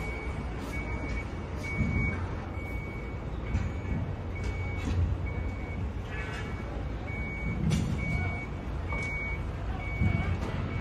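A vehicle's reversing alarm beeping steadily, one short high beep at a single pitch a little more often than once a second, over a steady low rumble.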